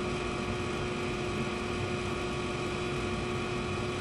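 Electric fan running steadily: an even rushing noise with a constant hum under it.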